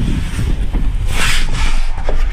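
Low rumble and rubbing of people sliding down an enclosed plastic tube slide, with a brief loud hiss about a second in.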